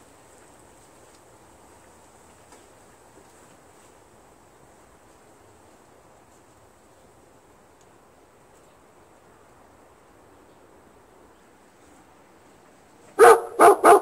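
Faint background noise, then near the end a dog barks three times in quick succession.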